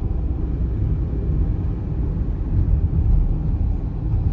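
Steady low rumble of a car's road and engine noise, heard from inside the cabin while driving.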